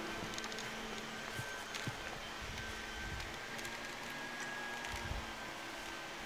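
Faint, steady background noise with a low, constant hum running through it and no distinct events.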